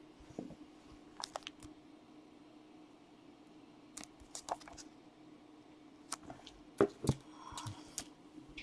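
Hard plastic trading-card cases being handled: scattered light clicks and taps, with two louder knocks a little before and just after seven seconds in as they are set down.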